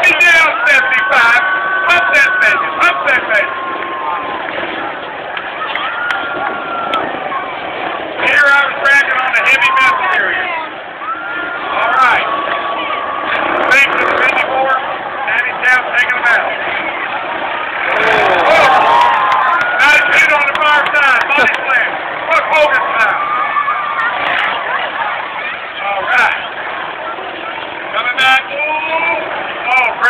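Demolition derby cars' engines running and revving on a dirt track, mixed with crowd noise and voices.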